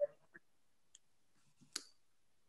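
A single sharp click near the end, after a faint tick about a second in, against a quiet background. The tail of a spoken phrase is heard at the very start.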